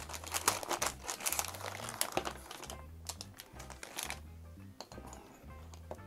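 Thin plastic packaging crinkling and rustling as a bag of small wooden kit parts is opened and handled, with light clicks among the crackle. It thins out after about four and a half seconds.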